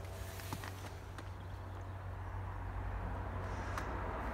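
Quiet car-cabin background: a steady low hum, with a soft hiss that swells slowly in the second half and a few faint clicks.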